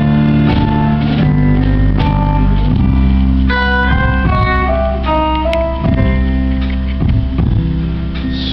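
Live band playing an instrumental passage: a guitar picks out a melody of separate notes over sustained bass and chords, with no singing.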